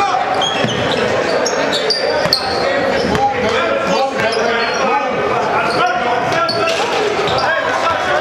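Live gym sound of a basketball game: a ball dribbling on a hardwood court and short sneaker squeaks over steady spectator chatter, echoing in a large gym.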